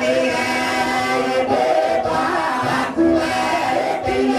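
A congregation of men and women singing a Kikuyu prayer hymn together, many voices holding and sliding between long sung notes.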